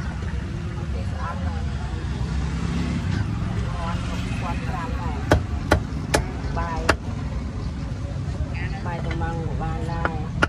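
Steel cleaver chopping on a round wooden chopping block: four sharp chops, starting about five seconds in, all within about a second and a half. Under them run a steady low rumble of passing traffic and voices in the background.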